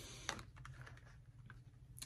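Faint light taps and slides of tarot cards being drawn from a deck and laid down on a cloth, a clearer tap about a quarter second in, over a low steady hum.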